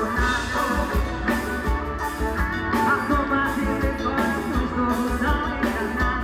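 A live band playing, with a woman singing lead over electric guitar and drums with a steady beat.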